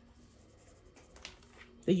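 A marker scribbling briefly on a paper savings tracker, colouring a number in, with faint scratchy strokes about a second in.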